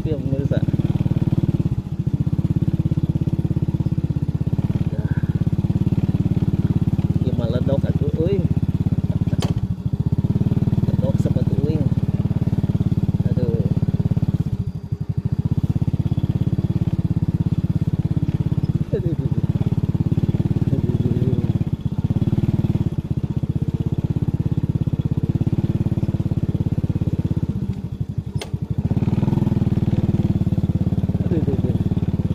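Small motorcycle engine running steadily at low speed, its note dipping briefly several times as the throttle is eased.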